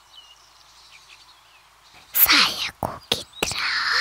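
Faint birds chirping in the background. About two seconds in, a loud breathy whisper runs for just over a second.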